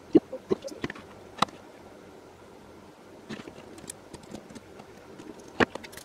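Red-handled automatic wire stripper clicking and snapping as its jaws grip and strip a wire: a few sharp clicks in the first second and a half, then small ticks, and one louder knock near the end.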